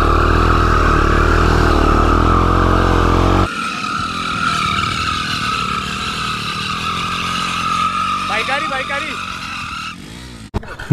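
Motorcycle burnout: the engine is held at steady high revs while the spinning rear tyre squeals. The deep engine note drops away abruptly about three and a half seconds in, and the tyre squeal carries on to the end.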